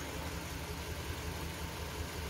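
Kia Sportage four-cylinder petrol engine idling with a steady low hum, misfiring on one cylinder so that it runs on three. The fourth cylinder's ignition coil gives no spark.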